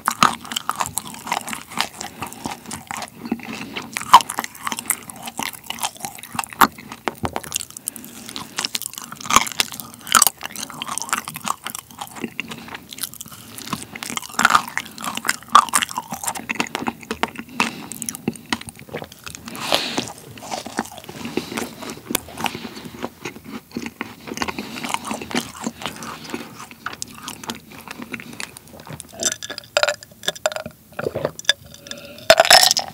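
Close-miked biting and chewing of a cream-filled macaron with a sprinkle-topped shell: irregular crunches and many small crackles with wet mouth sounds.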